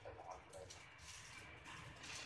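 Near silence: faint room tone with low rumble and faint, indistinct voices in the background.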